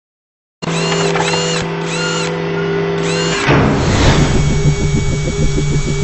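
Sound design for a logo intro. After a brief silence, a steady electronic chord comes in with a repeated sweeping effect over it. About three and a half seconds in, it changes to a rapidly pulsing, buzzy, machine-like sound.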